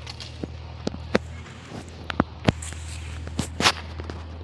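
Footsteps of someone walking: a run of irregular steps and scuffs, with a longer scraping scuff near the end, over a steady low hum.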